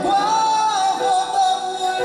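A man singing, holding a long note with a slight wobble at the end of a line, over upright piano accompaniment.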